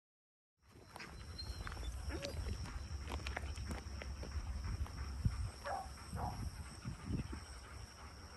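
Wind rumbling on the microphone over a steady high insect drone, with a few short whines from a black retriever sitting at the handler's side.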